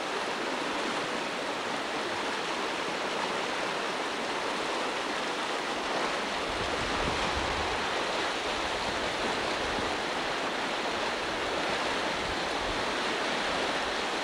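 Muddy floodwater rushing through a stream channel, a steady even rush of water. A low rumble comes in about halfway through.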